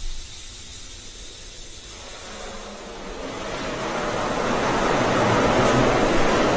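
Falcon 9 rocket venting gas on the launch pad: a rushing hiss that grows steadily louder from about two seconds in.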